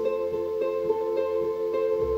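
Acoustic folk band in a short instrumental passage between sung lines: banjo and a small strummed string instrument, likely a charango, plucking a steady run of notes over upright bass.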